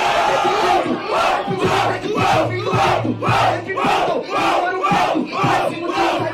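Crowd of spectators shouting and cheering a punchline in a freestyle rap battle. After about a second it settles into a rhythmic chant of about two shouts a second.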